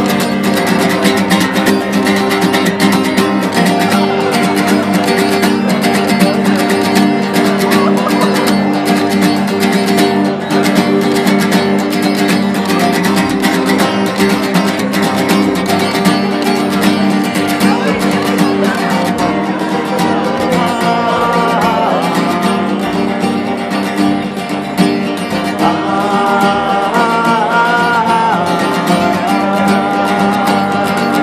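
Solo acoustic guitar strummed rapidly and steadily in an instrumental break between verses of a folk ballad.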